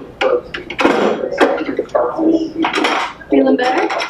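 Voices talking throughout, with light metallic clinks from metal school lockers and their combination locks being worked.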